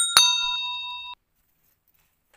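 Bell ding sound effect for a notification-bell click: two quick strikes with a bright, multi-tone ring that fades for about a second and then cuts off suddenly.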